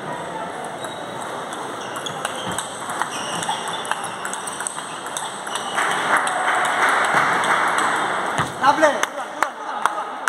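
Table tennis rally: a celluloid ball clicking sharply and repeatedly off the bats and the table. Voices carry through the hall, rising in the middle, with a loud shout near the end as the point finishes.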